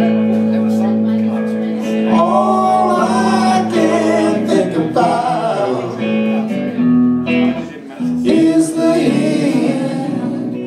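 Live band playing a song: electric guitars, one a Telecaster, over a drum kit, with a brief dip in loudness near the end.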